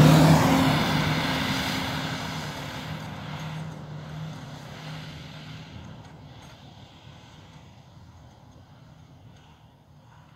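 Mitsubishi L200 pickup's engine pulling away up a snowy track, its note fading steadily as the truck drives off into the distance.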